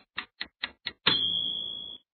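Quiz countdown timer sound effect: clock-like ticks, about four or five a second, then about a second in a single high ringing tone that fades and cuts off, signalling that time is up.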